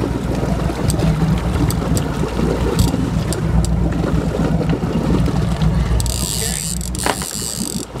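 Boat motor running with wind on the microphone and scattered clicks. About six seconds in, a higher mechanical whirring starts as the fishing reel is cranked.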